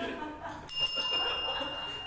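A steady high-pitched ringing tone sets in suddenly about two-thirds of a second in and holds unchanged, over people laughing and talking.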